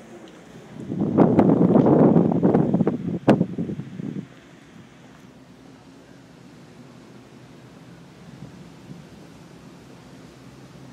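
Wind buffeting the camera microphone for about three seconds, loud and rough with a few clicks in it, then settling to a quieter steady rush of wind.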